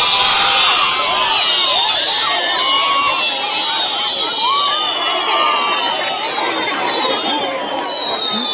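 Fireworks going off, giving a continuous run of overlapping high whistles that each fall in pitch, over a crowd shouting and cheering.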